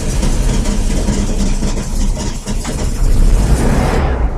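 A car engine running loudly and steadily with a deep, rough rumble.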